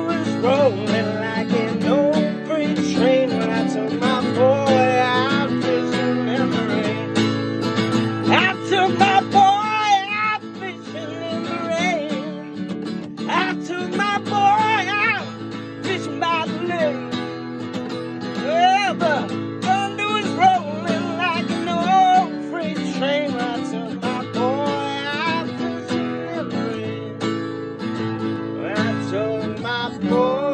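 Acoustic guitar strummed steadily in a bluegrass song, with a wordless vocal line wavering over the chords.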